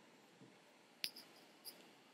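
Near silence broken by a few small clicks: a sharp one about halfway through, then two fainter ones.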